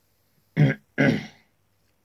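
A man clearing his throat twice, a short burst followed by a longer one.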